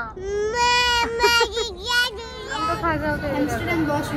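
A toddler's high-pitched, drawn-out whining cry lasting about two seconds and wavering in the middle, followed by talking.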